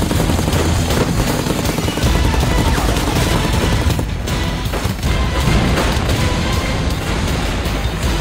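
Battle sound effects: dense gunfire and booming explosions, mixed with background music.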